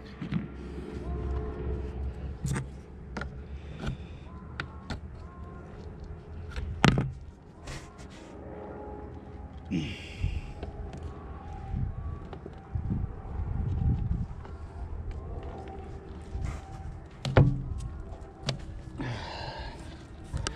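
Old sailboat deck hatch being pried and pulled up from its bed of old sealant: scattered knocks, clicks and handling noises, with sharp knocks about seven and seventeen seconds in and a brief scraping hiss about ten seconds in.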